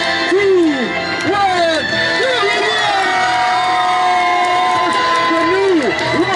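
Crowd cheering and whooping over loud music, with long rising and falling shouted calls.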